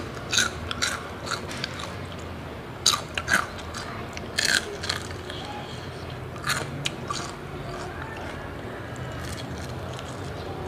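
Close-up crunching as a person bites and chews crispy fried food, a handful of sharp, irregularly spaced crunches.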